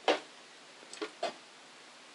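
Handling noise as a bassoon is picked up: a sharp knock, then two softer knocks about a second in.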